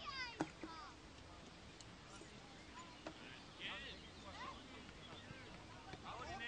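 Faint, scattered shouts and calls from people on an outdoor football pitch over a quiet background, with a sharper call right at the start and another about three and a half seconds in.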